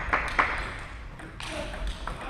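Table tennis ball bouncing, with light, sharp clicks: two quick bounces near the start, then two more about a second later, as the ball is handled before a serve.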